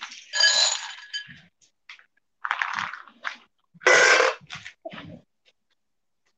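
Several short bursts of clattering and clinking from objects being handled, the first with a brief ringing tone, the loudest about four seconds in.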